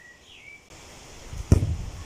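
Faint bird chirps, then a single sharp thud about one and a half seconds in as a football is kicked, followed by a low rumble.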